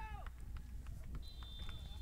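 Referee's whistle blown in one steady, thin high blast starting just over a second in and held for nearly a second: the half-time whistle ending the first half.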